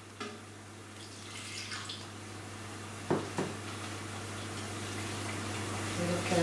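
Lemon juice poured from a glass into a blender jar, trickling and dripping, with two short knocks about three seconds in.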